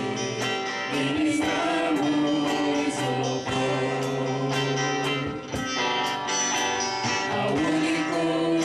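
Live gospel praise band performing: a woman and a man singing into microphones over strummed acoustic and electric guitars, with a steady drum-kit beat.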